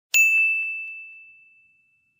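Notification-bell 'ding' sound effect: one bright chime struck just after the start, ringing down and fading out over about a second and a half, with a couple of faint ticks just after the strike.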